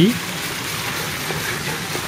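Steady splashing and gushing of water from a pool's fountain spouts.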